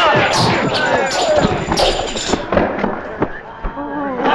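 Kung fu film fight sound: men's shouts and cries over sharp hit sounds about twice a second, dying down after about two and a half seconds to scattered groans from the beaten students.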